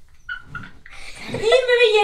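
Near-quiet for the first second or so, then a person's voice from about a second and a half in: a drawn-out, high-pitched sound that holds and then starts to slide down.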